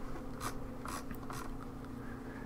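Several faint computer mouse clicks in quick succession over a steady low hum.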